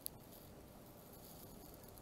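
Near silence, with the faint sound of a felt-tip marker drawing lines on paper and one short click right at the start.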